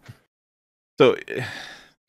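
About a second in, after a near-silent pause, a voice says "So" and lets it trail off into a breathy sigh.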